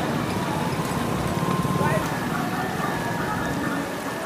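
Distant voices, faint and indistinct, over a continuous rumbling, fluttering noise.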